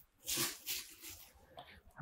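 Thin plastic trash bag crinkling in a few short, faint bursts as it is folded over the rim of a small plastic trash can and tucked in.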